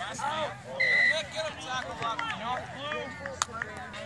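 Voices calling out across a youth rugby pitch, with a short, steady referee's whistle blast about a second in.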